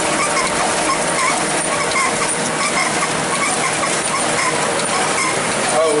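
Ryobi 3302M two-colour offset press running steadily: an even mechanical clatter with a light squeak repeating at a regular pace in step with the machine's cycle.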